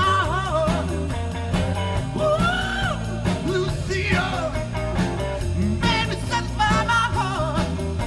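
A live rock band playing electric guitar, bass guitar and drums, with a singing lead voice over a steady beat.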